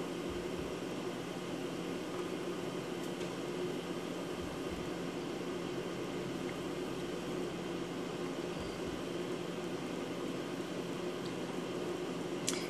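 Steady fan noise: an even hiss with a faint low hum, unchanging throughout.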